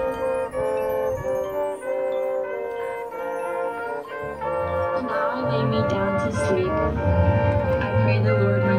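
High school marching band playing its field show: sustained wind chords, with low brass coming in about halfway through as the music builds louder.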